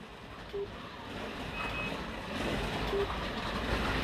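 Midget slot cars running laps on a multi-lane slot car track: a steady whir of the small electric motors and tyres on the track, growing louder. A few short electronic beeps sound over it.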